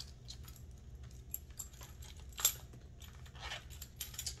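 Metal keys on a key holder jingling and clinking as they are handled, with one sharper clink about halfway through.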